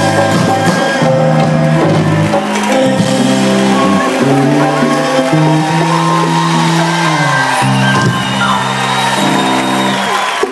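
Loud live band music with piano, bass guitar and percussion, playing long held chords, with crowd shouts over it.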